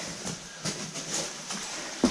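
Scuffing and soft knocks as a caver clambers over loose boulders, his oversuit and gloves brushing against rock. There is a faint rustle with a few small knocks about half a second apart.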